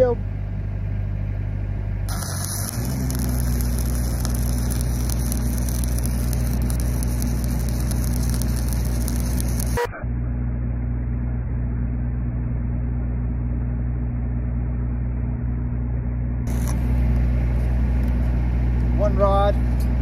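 Shielded metal arc welding with a 7018 low-hydrogen rod: the arc crackles and hisses for about eight seconds, starting about two seconds in and cutting off suddenly. Underneath, an engine-driven welding machine runs steadily, its engine speeding up as the arc is struck.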